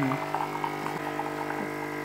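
Bosch Tassimo capsule coffee machine's pump humming steadily as it dispenses a stream of milk into a cup.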